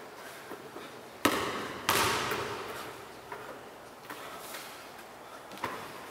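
A basketball bouncing hard on a tiled floor, twice in quick succession a little over a second in, each bounce echoing in the hard, open hall. Lighter taps and scuffs follow.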